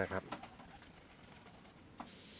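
The last word of a man's spoken phrase, then quiet background with faint pigeons cooing.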